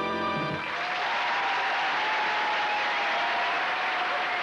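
The closing chord of the song's accompaniment held and then cut off about half a second in, followed by steady audience applause.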